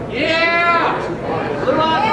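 A high-pitched vocal whoop lasting under a second, then more voices near the end.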